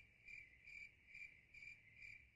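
Faint cricket-chirp sound effect: a high, steady chirp repeating about twice a second.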